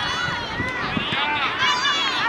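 Many high-pitched voices shouting and calling over one another across a youth football pitch. The calls are short and arched, and the loudest comes near the end.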